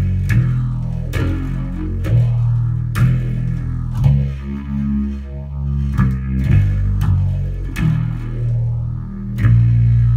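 Electric bass played through an Electro-Harmonix Deluxe Bass Big Muff fuzz, an Electro-Harmonix Bass Clone chorus and an MXR Phase 95 phaser, all on at once. It plays heavy, dissonant low notes and chords, struck about once a second and left to ring, with the phaser sweeping through the distorted tone.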